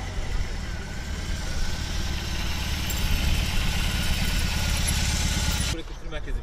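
A heavy cruiser motorcycle's engine running as it is ridden along, a steady low rumble that grows louder past the middle and cuts off abruptly just before the end.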